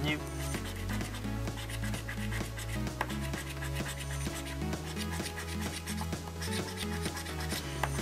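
A coin scratching the latex coating off a paper scratchcard in quick rasping strokes, over background music with a repeating bass line.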